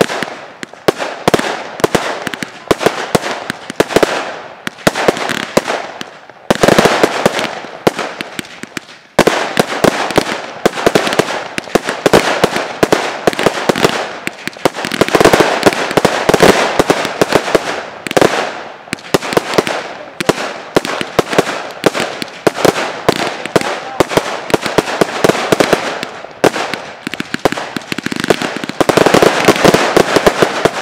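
Fireworks display: a rapid, continuous stream of launches and aerial shell bursts, many sharp bangs a second over crackling, with brief lulls about six and nine seconds in and a denser barrage near the end.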